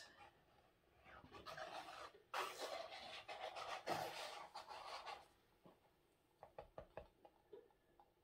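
Soft, wet rushing of acrylic pouring paint flowing out of a flipped plastic cup as it is lifted off the canvas, loudest a couple of seconds in, followed by a few faint ticks as the cup is handled and drips.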